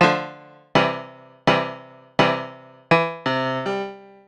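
Dead Duck Software D-Piano digital piano plug-in playing a preset: repeated piano chords about one every three-quarters of a second, each struck and dying away, with two quicker, lower chords near the end.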